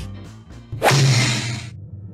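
A sudden whooshing hit sound effect about three-quarters of a second in, fading away over the next second, over background music.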